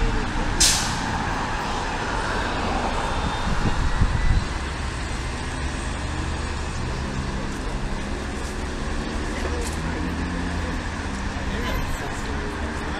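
A city transit bus's air brakes release with a short, sharp hiss about half a second in. The bus's engine then runs as it pulls away, over a steady street-traffic rumble.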